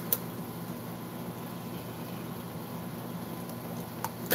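Steady low hum and faint hiss of room noise, with one short sharp click just after the start.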